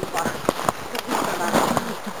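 Footsteps crunching in snow on a downhill trail, a series of short irregular crunches.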